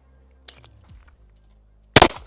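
A short click from handling a pistol about half a second in, then a single shot from a Sig P365X Macro Comp 9mm pistol just before the end, by far the loudest sound.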